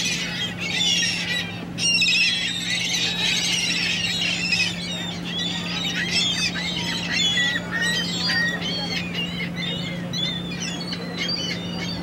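A flock of gulls squawking, with many short, overlapping calls that are busiest in the first half, over a steady low hum.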